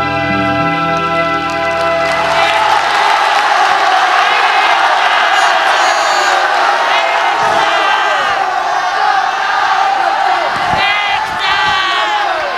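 A band's final held chord ends about two seconds in, then a large concert audience cheers and screams, many voices calling out at once.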